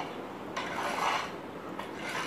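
Rubbing, rustling noise of hands and shirt sleeves brushing as a person signs, swelling loudest about a second in.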